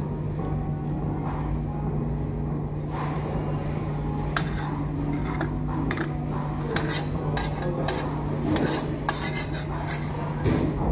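Metal fork and spoon scraping and clinking against a ceramic baking dish in scattered strokes, more of them from about four seconds in. A steady low hum runs underneath.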